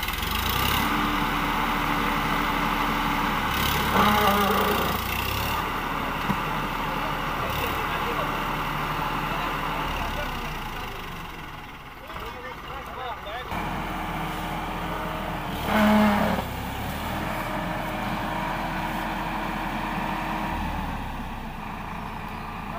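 Standard 345 tractor's diesel engine running hard under load while bogged in mud, with a steady drone that eases off midway and then pulls hard again. Voices call out now and then over the engine.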